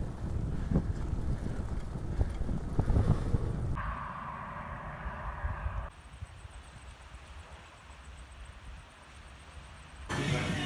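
Wind gusting across a phone microphone outdoors, a rough low rumble. About six seconds in it drops to a much quieter open-air ambience with a faint, high, rapidly pulsing tone.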